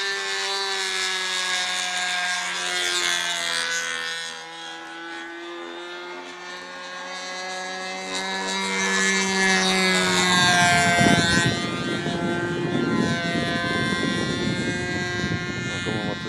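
Small petrol engine of a radio-controlled model plane in flight, a steady drone. It fades a few seconds in, then swells to a close pass about ten seconds in, its pitch bending as it goes by, and runs on rougher afterwards.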